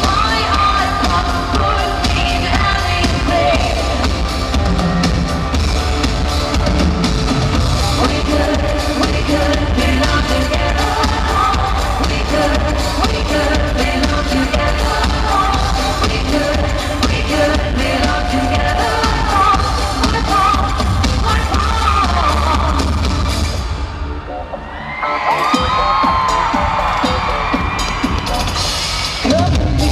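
Live pop music through an arena sound system, with a woman's sung lead vocal over heavy bass, recorded from the crowd. About three-quarters of the way through, the top end drops away for a second or two before the full mix comes back.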